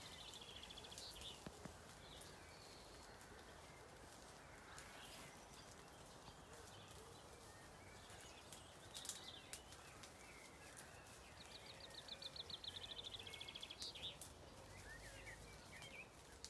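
Zwartbles sheep grazing close by, faint: quick tearing and chewing of grass and leaves heard as runs of soft ticks, busiest late on, with a few short high bird chirps and trills.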